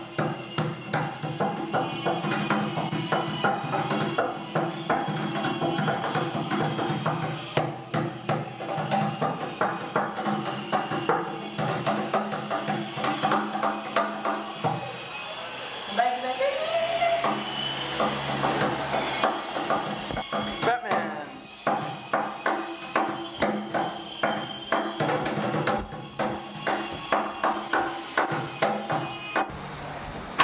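Rhythmic hand drumming on an empty plastic Culligan water-cooler bottle used as a drum, a quick run of steady beats kept up throughout, with music or voices alongside.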